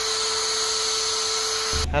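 A steady, high-pitched whine over a single lower hum tone, starting abruptly and cutting off suddenly after nearly two seconds, unchanging throughout: an edited-in sound effect.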